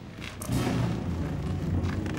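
Cartoon sound effect: a low, steady rumble that comes in about half a second in, as of many animals stampeding through dust.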